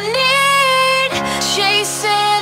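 Electro dance track with a sung vocal line: one long held note that slides up at the start, then a change to new notes about a second in, over steady sustained synth chords.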